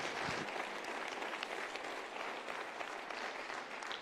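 Audience applauding: dense, steady clapping from a large crowd of seated people, dying away at the end.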